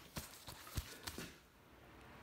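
Four faint, short taps and knocks in about a second, as parts of a transmission front pump are handled on a workbench, then quiet.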